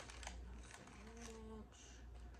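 Faint light clicks and rustles of small plastic and paper food containers being handled on a table, with a short hummed note about halfway.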